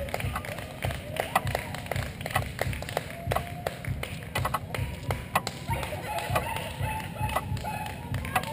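Roadside spectators clapping in scattered, uneven claps, with a few voices cheering on runners as they pass.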